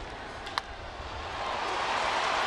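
Baseball bat striking a pitched ball: one short, sharp crack about half a second in, off a ground ball. Ballpark crowd noise swells after it.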